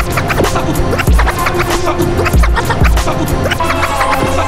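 Hip-hop beat between rap lines, with turntable scratching laid over heavy kick drums and quick percussion.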